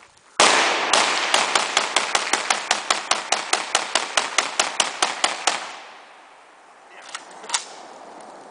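AK-pattern rifle firing a long, rapid string of shots, about five a second for some five seconds, its echo rolling on and fading away after the last shot.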